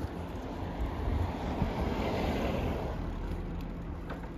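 A car driving past, its road noise rising to a peak about two seconds in and then fading, over wind rumble on the microphone.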